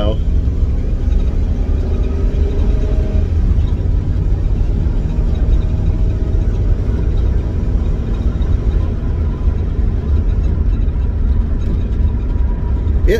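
A vehicle's engine running, heard from inside the cabin as a steady low rumble, with a faint tone rising slightly in the first few seconds. The engine might be missing just a little bit on one cylinder.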